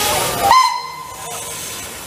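Steam tram locomotive's whistle giving one short blast about half a second in, fading away over the following second, over a steady hiss of steam.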